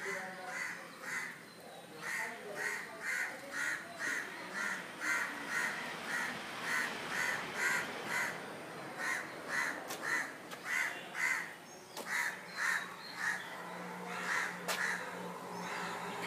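Crows cawing in the palm trees: a long, steady run of short harsh caws, about two a second, going on like an alarm clock.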